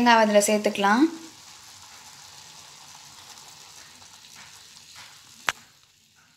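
Mixed vegetables sizzling in a pan: a steady, faint hiss, with one sharp knock about five and a half seconds in.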